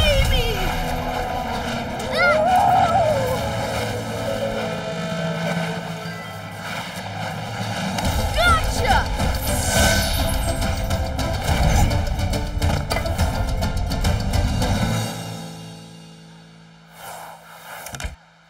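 Animated-cartoon soundtrack: background music mixed with whooshing magic sound effects and brief character cries. It fades down near the end.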